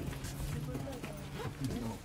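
Low background chatter of voices, with no clear words, and a few faint knocks.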